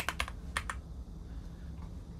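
Computer keyboard keystrokes: about five quick key taps in the first second, then only a low steady hum.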